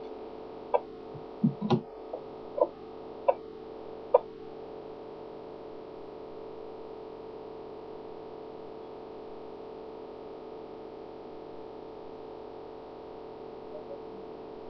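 A steady hum on one pitch throughout, with five short, sharp chirps or clicks in the first four seconds.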